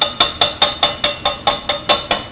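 Metal food can knocked repeatedly against the rim of a stainless saucepan as it is shaken upside down to empty out canned tomatoes. The knocks come fast and even, about five or six a second, each with a short metallic ring.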